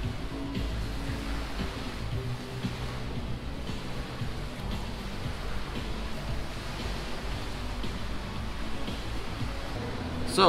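Background music with changing low notes and a strong bass, over a steady hiss of noise.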